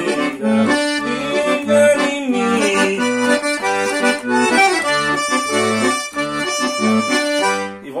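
Todeschini piano accordion playing a lively sanfona batidão phrase: a right-hand melody over a steady left-hand accompaniment of bass notes alternating with chords.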